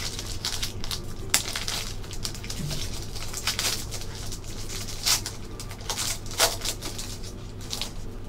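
Foil trading-card pack wrapper being torn open and crinkled by hand as the cards are slid out: irregular crackling and rustling, with sharper crackles about a second in and again around five and six and a half seconds.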